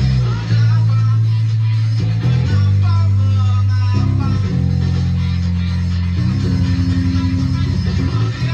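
Electric bass guitar playing long held low notes that change every second or two, then quick repeated notes near the end, over a rock band recording.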